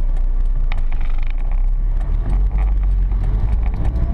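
Small car's engine running at low speed, heard from inside the cabin as a steady low drone, with a few faint ticks over it.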